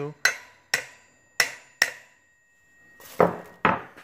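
A hammer gently tapping the steel axle of a Bafang 500W geared hub motor four times, each a sharp metal-on-metal knock with a brief ring, driving the motor out of its hub shell. A rougher rustling clatter follows near the end.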